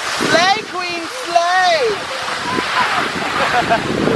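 A woman's wordless exclamations, high and sliding up and down in pitch, over the first two seconds, then a steady rushing hiss of skiing on snow.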